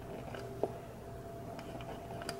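Correction tape dispenser drawn over the edge of a paper page: faint small clicks and scratches, with one sharper tick a little over half a second in.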